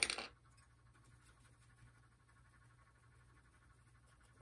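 A single light clink right at the start as a painting tool is handled at the palette, then quiet room tone with a faint steady low hum.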